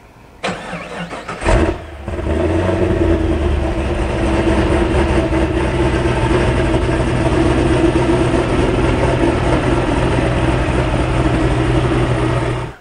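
Supercharged LS truck-block V8 of a Pontiac GTO starting: a short crank, the engine catching with a burst about a second and a half in, then idling steadily to circulate its fresh oil.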